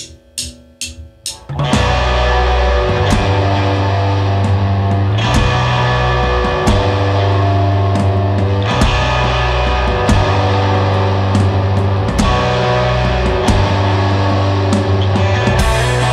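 Drumsticks clicked together four times as a count-in, then a rock band comes in all at once: electric guitars and a drum kit playing a loud, steady song.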